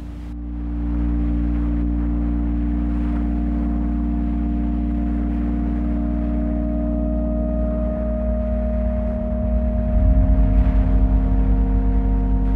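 Ambient background music of long held, drone-like chords that fade in over the first second and change chord about two seconds before the end.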